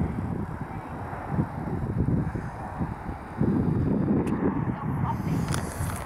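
Wind buffeting the camera microphone: a gusty low rumble that grows louder about halfway through, with a few faint clicks near the end.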